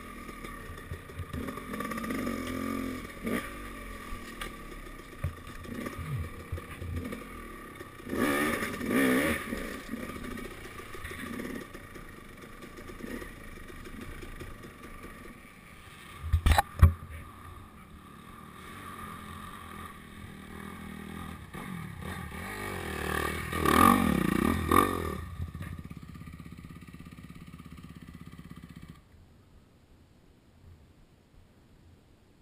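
KTM dirt bike engine running, revving up twice, about 8 seconds in and again about 24 seconds in. Two sharp knocks come a little past the halfway point, and the engine sound falls away just before the end.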